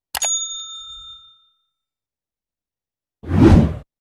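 Subscribe-animation sound effects: a quick double click, then a bell ding that rings and fades over about a second. Near the end comes a short whoosh.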